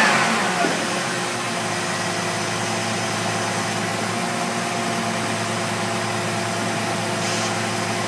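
2006 Jeep Liberty's 3.7-litre V6 engine settling back from a rev in the first second, then idling steadily.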